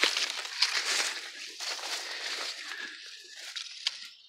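Dry corn leaves and undergrowth rustling and crackling as someone pushes through a dense corn patch. The rustle is loudest at first and dies down over the last second or so.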